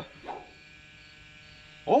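Faint, steady electrical hum, a set of unchanging tones with no rhythm.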